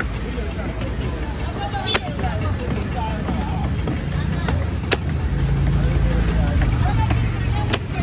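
Machete chopping through a large fish carcass into a wooden log chopping block: three sharp chops, a few seconds apart, over market chatter.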